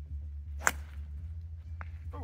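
Golf driver striking a teed ball on a full swing: one sharp crack about two-thirds of a second in.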